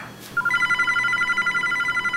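Electronic telephone ringer sounding a fast warbling trill of several high tones. It starts about a third of a second in and lasts close to two seconds.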